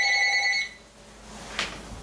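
A telephone ringing: a steady, fluttering ring at several pitches at once that stops about half a second in. A single click follows near the end.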